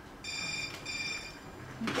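Telephone ringing with an electronic ring: two short rings, each about half a second long, with a brief gap between them.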